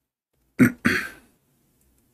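A man coughing to clear his throat: two quick coughs a quarter second apart, the second trailing off.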